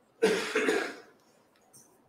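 A person coughing: one short, loud cough about a quarter of a second in, lasting under a second.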